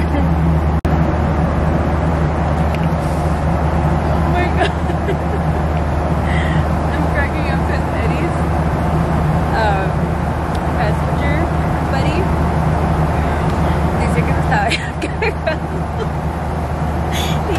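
Steady loud drone of an airliner cabin in flight, with faint voices of other passengers.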